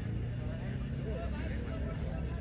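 Indistinct chatter of cricket spectators over a steady low rumble.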